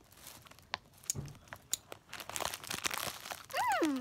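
Scattered small crinkles and clicks of a candy packet being handled while gummy candies are chewed. Near the end a child gives a short hummed 'mmm' that falls in pitch.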